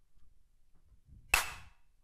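A single sharp crack of a wooden drumstick strike about a second and a half in, ringing out briefly.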